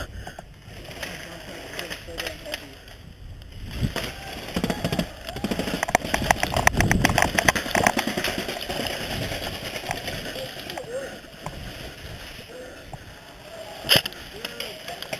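A laugh at the start, then faint distant voices and rustling movement. In the middle comes a loud run of rapid, evenly spaced clicks lasting a few seconds.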